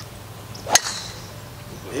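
A golf club striking a teed ball: a brief swish of the swing, then one sharp crack of impact.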